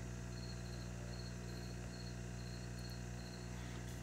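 A cricket chirping, a faint high chirp repeating at a steady pace, over a constant low electrical hum.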